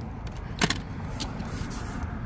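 A small die-cast toy car being set into a plastic carrying-case slot: one sharp click a little over half a second in, then a couple of lighter clicks, over a steady low background rumble.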